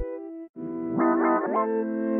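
Trap type-beat instrumental in a drum drop: the 808 bass and drums stop, leaving only a plucked guitar melody loop. There is a brief silence about half a second in before the melody comes back.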